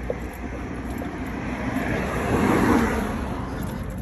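A car passing by on the road, its noise swelling to a peak a little past halfway and then fading.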